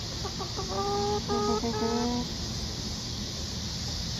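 A chicken calls in a quick run of about eight short notes over the first two seconds. The notes hold a level pitch and grow a little longer toward the end.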